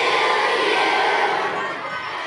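A large crowd of schoolchildren cheering and shouting, dying down toward the end.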